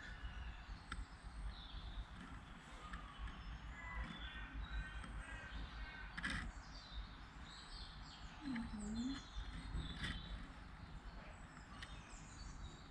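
Wild birds chirping and calling in short scattered notes, with a few harsher calls, over a steady low rumble.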